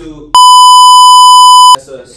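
A very loud, steady, high-pitched bleep tone dubbed over the audio to censor speech. It cuts in sharply about a third of a second in and cuts off just as sharply after about a second and a half. Snatches of a voice are heard just before and just after it.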